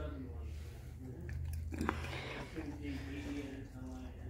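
A dog chewing a piece of chicken, with a sharp click a little under two seconds in.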